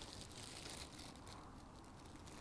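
Near silence: faint outdoor background noise with a few light rustles.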